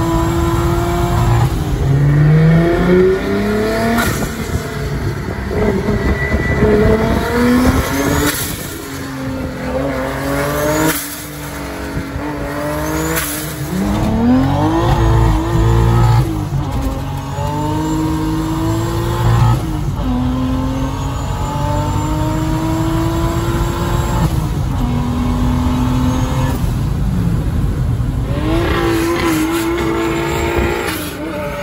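Toyota Hilux's swapped-in 2JZ-GTE turbocharged straight-six, heard from inside the cab under hard acceleration. Its pitch climbs and then falls back with each gear change or lift, repeatedly.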